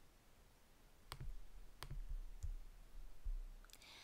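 Computer mouse clicking: two sharp clicks about a second apart, a little over a second in, then a fainter third click.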